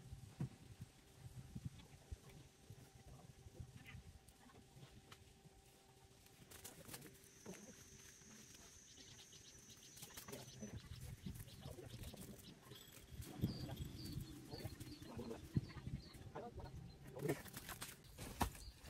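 Faint outdoor ambience: short high bird chirps and a thin high whistle over a steady low hum, with rustling of leaves and stems as people move through the vegetation.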